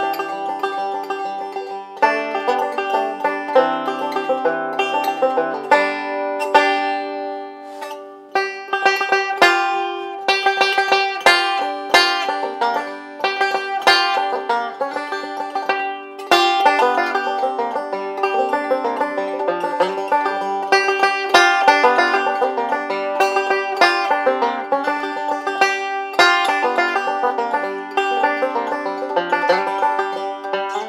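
Charles Paddock maple banjo with a Corian rim, fingerpicked with picks in a quick run of bright plucked notes. The playing eases off about seven seconds in and breaks briefly around sixteen seconds.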